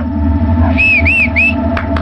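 Film background score: a low, steady drone with held tones, over which three short whistle-like notes rise and fall in quick succession about a second in.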